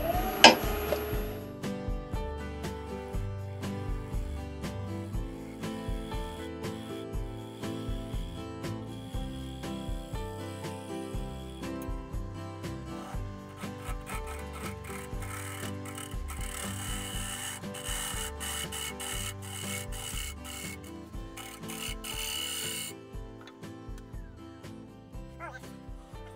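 Background music playing over a steel scraper cutting the inside of a spinning teak bowl on a wood lathe: a rasping scrape that is loudest for several seconds near the end, with a sharp knock just after the start.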